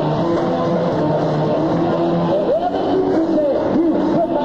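Live band playing a song, with held notes underneath and a melody line that swoops up and down in pitch in the second half.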